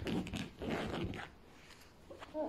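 A puppy rubbing and scrabbling against fabric sofa cushions: two bursts of scraping, rustling noise, the second ending a little past halfway.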